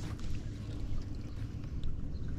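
Steady low rumble of wind and water around a small fishing boat sitting on a lake, with a few faint ticks.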